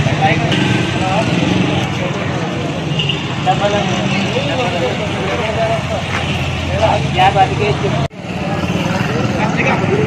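Several men's voices talking and laughing over a steady low background hum of street noise; the sound breaks off abruptly about eight seconds in and picks up again at the same level.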